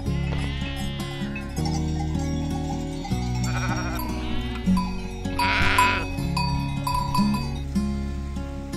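Sheep bleating several times, the loudest call about five and a half seconds in, over instrumental background music.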